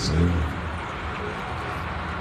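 Low steady rumble of an idling car engine under general outdoor background noise.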